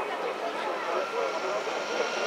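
Steady engine hum of a Ford pickup truck driving the mobile starting gate down the track, with faint voices underneath.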